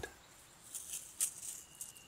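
A few faint, scattered rustles and crackles as hands handle a split piece of ash log with bark and moss on it.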